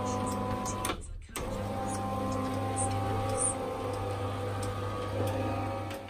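Electric roller garage door motor running steadily as the door closes, a low mains-like hum with a steady mechanical whine. It drops out briefly about a second in.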